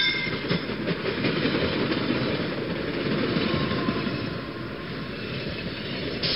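Train running on rails: a steady rumble of carriage wheels on track.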